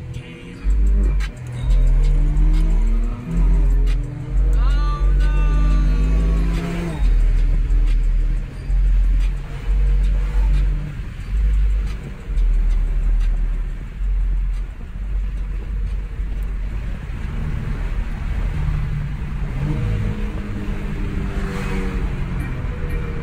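Car engine accelerating hard, its pitch climbing in several rising pulls during the first seven seconds and again near the end. It plays over hip-hop music with a heavy, pulsing bass beat.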